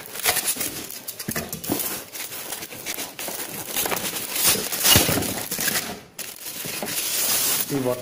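Cardboard box and paper packing being handled and pulled about by hand while a ceiling fan is unpacked: continuous rustling, scraping and crinkling with small knocks, loudest about five seconds in.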